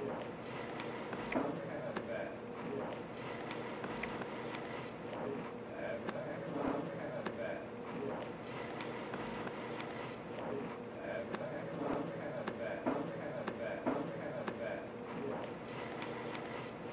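Indistinct voices over a steady background din, with scattered sharp clicks.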